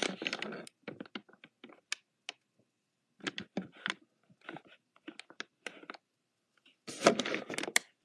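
Handling noise on the phone that is recording: scattered light clicks and taps, then a louder burst of rubbing and knocking about seven seconds in as a hand passes close over the phone.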